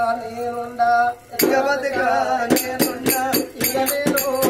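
Male voice singing long held notes in Oggu Katha folk style; after a brief pause about a third of the way in, sharp drum strikes come in and keep a quick beat under the singing.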